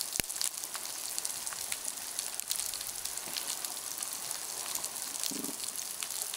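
Underwater coral reef recording: a dense, steady crackle of snapping shrimp throughout, with one sharp click just after the start. About five seconds in comes a short, low fish grunt.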